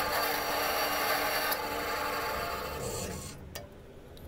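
Bandsaw cutting through a small piece of walnut: a steady hiss of the blade in the wood with a faint hum under it. It fades and stops a little past three seconds in, followed by a single click.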